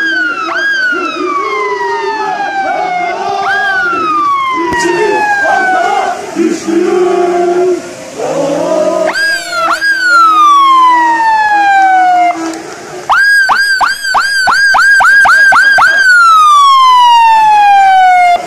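Traffic police car siren sounding repeated wails, each rising quickly and falling slowly over two to three seconds. About thirteen seconds in it switches to a fast yelp for about three seconds, then drops into one more long falling wail.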